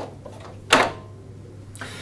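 A single knock from the mower's metal upper handle being set down onto the mower, about two-thirds of a second in, with a short ring after it and a fainter knock near the end. A low steady hum runs underneath.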